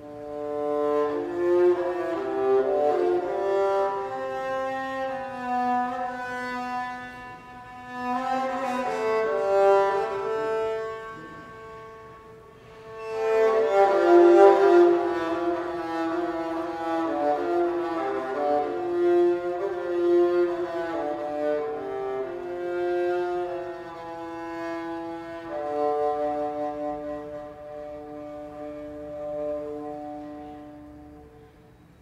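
Medieval music played by an early-music ensemble on bowed string instruments: a slow melody in long held notes. It thins out about twelve seconds in, then swells back fuller and louder.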